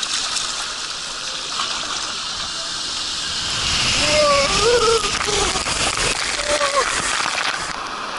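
Water rushing down a steep open body slide around a rider, heard close up from the rider's camera. It grows louder about halfway through as the rider picks up speed, with spray and splashing near the end at the splashdown.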